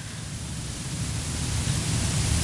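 An even hiss of room noise and recording hiss with a low rumble beneath it, growing slowly louder.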